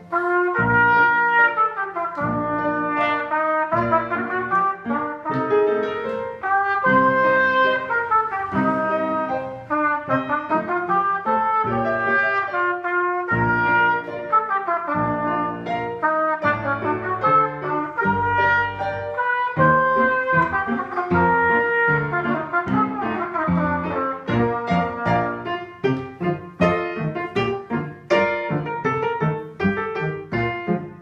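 Trumpet playing a march-style étude, a run of bright, clearly separated notes in a steady rhythm.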